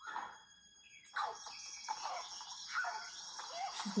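Television drama soundtrack played back: a short sound at the start, then from about a second in a sudden mix of electronic sound effects and incidental music with a lot of hiss, with a voice starting near the end.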